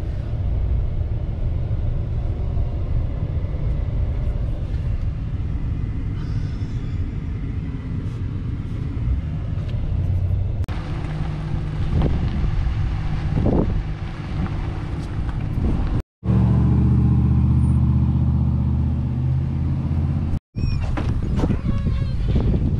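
Engine and road noise inside a vehicle's cab as it drives through town, a steady low rumble. Later comes outdoor traffic-like sound with two brief swells, then a louder, steady low drone.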